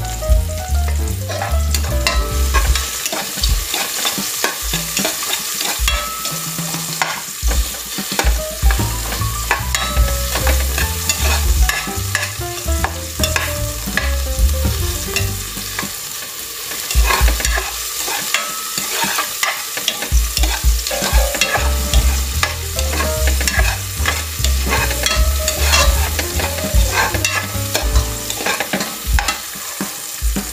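Sliced onion and garlic sizzling in hot oil in an aluminium pot while a metal spoon stirs them, scraping and clicking against the pot, with repeated low thumps.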